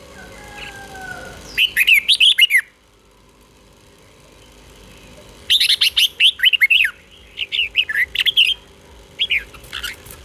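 Red-whiskered bulbul singing in short, fast phrases of rising and falling whistled notes. A first phrase is followed by a pause of nearly three seconds, then three more phrases come close together near the end.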